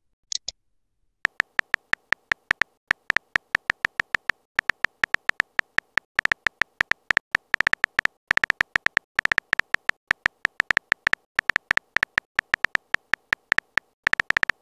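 Simulated keyboard tap sounds of a texting-story chat app, a quick irregular run of identical short clicks, several a second with brief pauses, as a message is typed out letter by letter.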